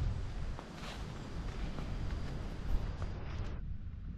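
Footsteps walking on a dirt footpath, a few soft steps over a low wind rumble on the microphone.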